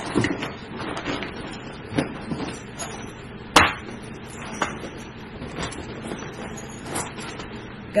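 Objects and a bag being handled while packing: scattered light knocks and clicks, with one sharp knock about three and a half seconds in.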